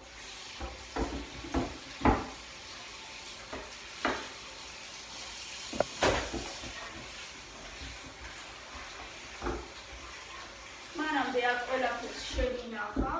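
Kitchen tap running into a stainless-steel sink while a wooden cutting board is scrubbed, with a few sharp knocks of the board against the sink. A voice starts near the end.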